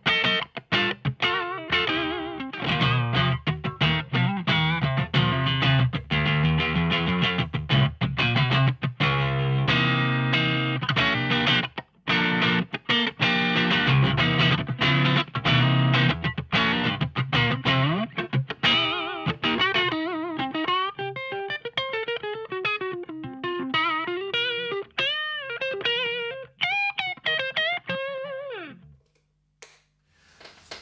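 Electric guitar played through the crunch channel of a Victory Silverback valve amp, with a distorted lead tone. Fast runs of notes give way in the second half to slower held notes with wide vibrato and bends, and the playing stops shortly before the end.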